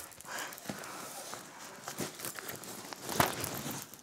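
Rummaging through a backpack: rustling and crinkling of bags packed inside it, with scattered small knocks, the sharpest about three seconds in.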